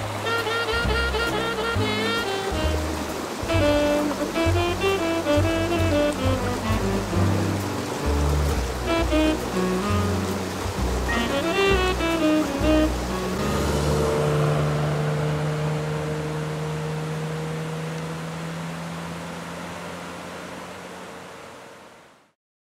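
Background music: a melody over a pulsing bass line that settles about two-thirds of the way through into one long held chord, which fades out to silence at the end. Running stream water is faintly audible beneath it.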